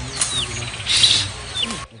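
Outdoor ambience with birds calling: a few short falling chirps and a brief brighter call about a second in, over a steady background noise.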